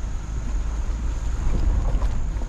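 Low, steady rumble of a vehicle driving over a grassy dirt track, with wind buffeting the microphone and a few knocks or rattles near the end.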